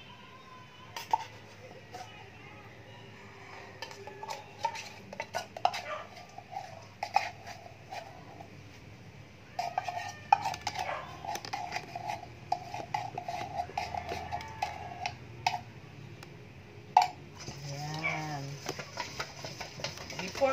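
Metal utensils clinking and scraping against a stainless steel mixing bowl and an opened can of condensed milk, as the milk is added to egg yolks and stirred in with a wire whisk. Irregular clicks grow busier from about four seconds in, with a stretch of ringing scraping from about ten to fifteen seconds.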